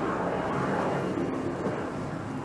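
Steady, even background noise with a low rumble and no clear individual events.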